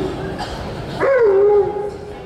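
A dog gives one short whining call about a second in; it rises sharply in pitch, then falls and trails off.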